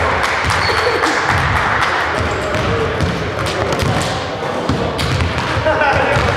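Basketball bouncing on a gym's hardwood floor, irregular thuds heard through the echoing hum of players' voices in a large hall.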